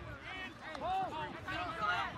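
Spectators' raised voices shouting during a play, with no clear words, loudest about a second in and again near the end.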